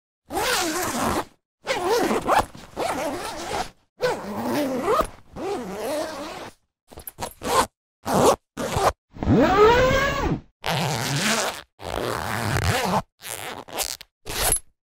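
A run of separate zipper sound effects, about a dozen zips one after another, each lasting a fraction of a second to about a second, with silent gaps between them. One zip about two-thirds of the way through has a pitch that rises and then falls.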